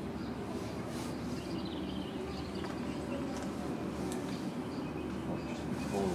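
Steady low outdoor rumble, with a few faint short chirps higher up.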